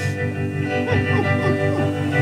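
Hollow-body electric guitar playing a sustained accompaniment between sung lines: held notes ring, with a few short downward glides in pitch around the middle.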